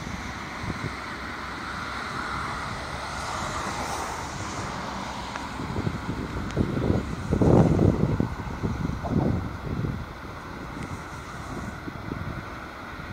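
Wind buffeting the microphone in irregular gusts, loudest from about six to ten seconds in, over a steady background hiss.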